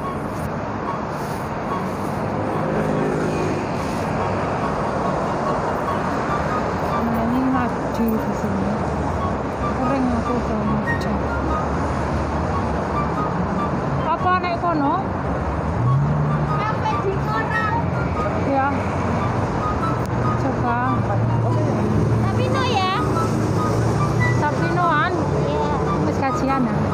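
Busy city street: a steady hum of passing traffic with passers-by talking.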